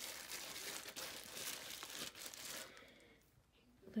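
Plastic bag around a turkey crinkling and rustling as a hand presses and handles it. The crinkling dies away about two and a half seconds in.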